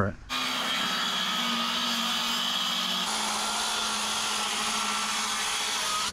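Circular saw cutting lengthwise along a wooden form board, running steadily under load from just after the start and stopping at the end of the cut.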